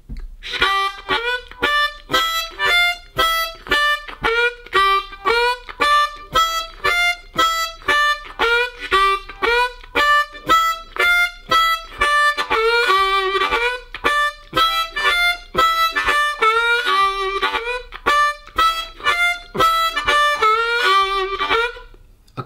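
Hohner Crossover C diatonic harmonica playing a looped two-bar blues riff of single notes in cross position (key of G), with draw bends. The riff is played evenly on the beat at first. From about halfway through, it is played with two notes pushed slightly early and held a fraction longer.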